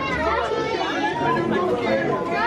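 Background chatter of several people's voices talking over one another.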